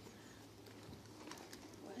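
Near silence, with a faint bird call and light rustling as a fabric finds pouch is rummaged through.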